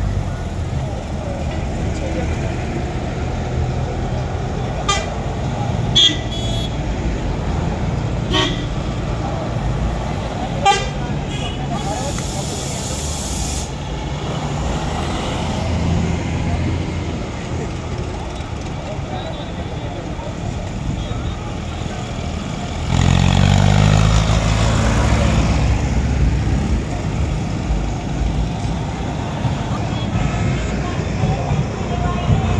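A convoy of buses and trucks driving past close by, engines running, with several short horn toots in the first eleven seconds and a brief hiss around twelve seconds in. A heavy truck passes loudly from about twenty-three seconds on.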